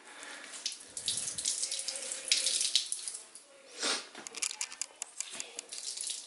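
Water wrung from a wet microfiber rag splashing and trickling into a ceramic bathroom sink in uneven spurts.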